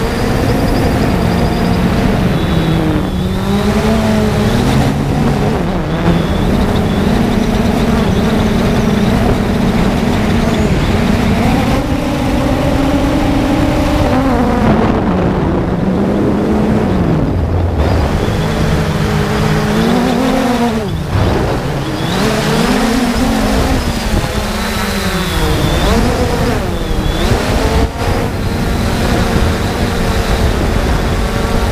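3DR Solo quadcopter's electric motors and propellers whining, heard from its onboard camera. The pitch keeps rising and falling with the throttle: highest for a few seconds about twelve seconds in, then swinging up and down several times in the last third.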